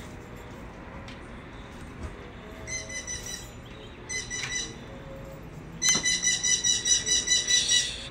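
A parrot calling in loud, high-pitched repeated squawks: a short run about three seconds in, another briefly in the middle, then a louder, faster run of about five calls a second over the last two seconds.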